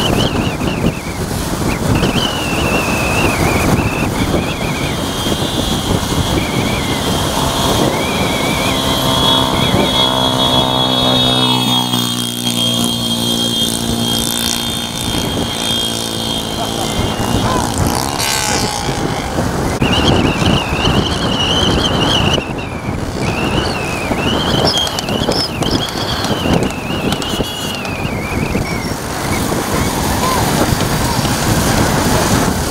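Motorcycles and cars of a road convoy running along at speed, with wind on the microphone. A high, wavering whistle sounds on and off. From about eight seconds in, one long horn note is held for several seconds.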